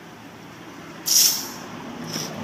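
Pressurised gas hissing out of an HCW camera water housing as a plug on its back plate is undone: one sudden loud hiss about a second in, fading over about half a second. The pressure comes from an Alka-Seltzer tablet fizzing inside the sealed housing during a leak test.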